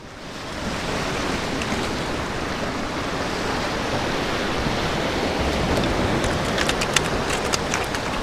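Ocean surf washing over and around rocks, a steady rush of water, with a few short sharp clicks between about six and seven seconds in.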